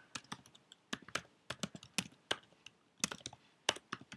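Typing on a computer keyboard: an uneven run of key clicks, about five a second, with a short pause a little before three seconds in.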